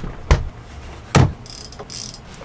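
Direct-drive bike trainer being handled and set down on a wooden floor: two sharp clunks about a second apart, with lighter knocking and rustling in between.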